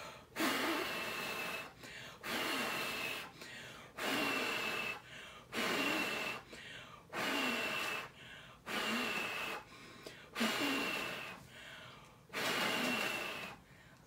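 A person blowing hard, again and again, on a water-bottle whirligig to set it spinning: about eight long blows of breath, roughly one every 1.5 to 2 seconds, with quicker in-breaths between. Each blow carries a faint high whistle.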